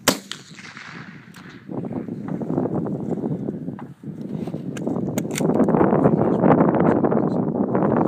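A single .308 rifle shot from a Winchester Model 70 Stealth, one sharp crack at the very start. After it comes a loud, even rushing noise that builds over the following seconds.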